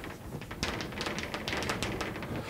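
Chalk writing on a blackboard: a quick, irregular run of small taps and short scratches.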